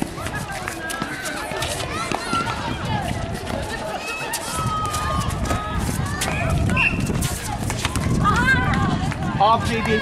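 Netball play on an outdoor hard court: players' running footsteps slapping and scuffing on the surface, mixed with scattered calls and shouts from players and onlookers.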